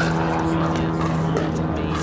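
Pickleball paddle striking the plastic ball during a rally, a sharp pop at the start, with a steady low mechanical hum underneath.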